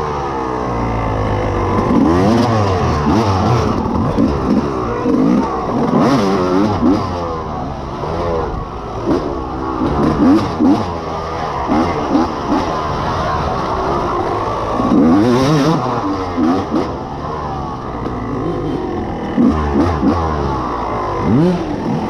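Dirt bike engine ridden hard off-road, revving up and falling back again and again as the rider accelerates, shifts and brakes, with occasional sharp knocks from the bike over the rough trail.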